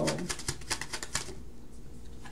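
Rapid light clicking of tarot cards being shuffled by hand, about seven clicks a second, that dies away a little past the first second.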